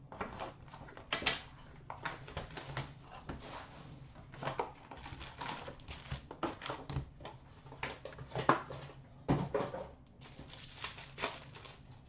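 A box of hockey trading cards being cut open and its wrapped packs pulled out and handled: irregular crinkling, rustling and small clicks of wrapper and cardboard, with one louder knock about nine seconds in.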